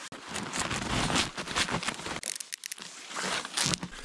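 Snowshoes crunching and crackling on snow in irregular steps.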